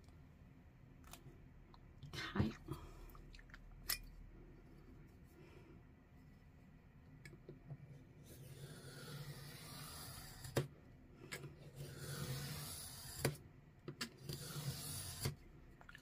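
Craft knife drawn along the edge of a steel ruler, slicing through paper pages in light, repeated strokes that cut only one or two sheets at a time. The strokes are faint scrapes in the second half, with a few small clicks and taps of blade and ruler scattered through.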